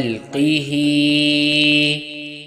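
A man's voice chanting an Arabic invocation in slow melodic recitation. After a brief break and a short glide near the start, he holds one long steady note.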